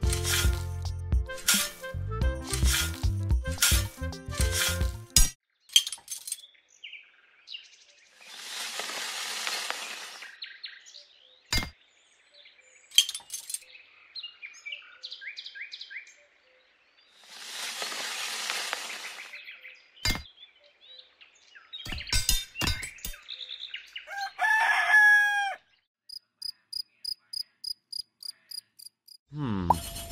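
Music with a beat for the first few seconds, then dry sand and cement powder poured into the drum of a miniature toy concrete mixer in two pours of about two seconds each, with a few clicks. Near the end comes a rooster crow, followed by a run of quick high chirps.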